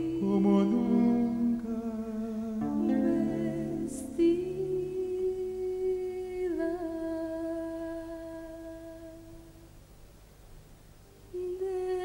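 Wordless vocal harmony: several voices humming long held notes together over acoustic guitar. The chord dies away toward the end, and a new sustained sung note comes in just before the close.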